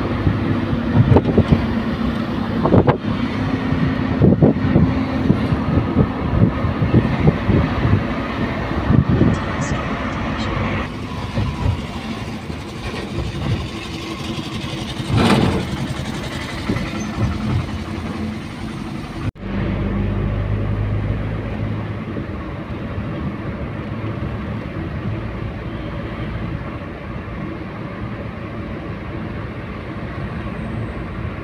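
Road and traffic noise from a moving car: steady tyre, engine and wind rumble with frequent knocks and gusts in the first third and one brief loud burst about halfway. About two-thirds through the sound changes abruptly to a steadier, lower rumble.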